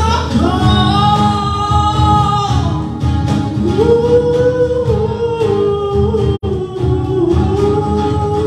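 Live acoustic band: a male singer holding long, slowly bending notes over strummed acoustic guitars, electric bass and cajon. The sound cuts out for an instant about two-thirds of the way through.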